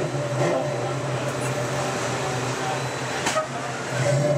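Ride car of Radiator Springs Racers running along its track with a steady low motor hum, and a short knock about three seconds in.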